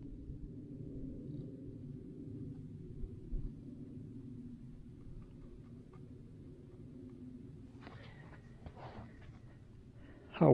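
Faint strokes of an oil-paint brush on canvas over a low steady rumble, with a few soft brush scratches about eight to nine seconds in.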